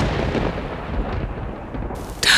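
Dramatic soundtrack sting ending: a deep boom and rumble dying away, the high end fading first.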